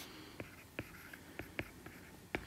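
Faint stylus taps and strokes on a drawing tablet while handwriting: about six light, irregular clicks.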